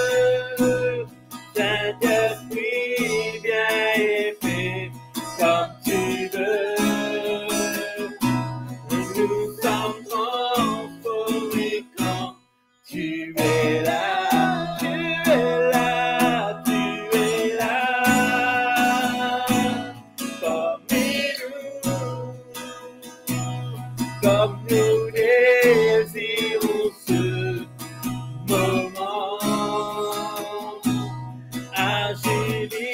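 Acoustic guitar strummed while a man and a woman sing a worship song together. The sound cuts out completely for about half a second around twelve seconds in.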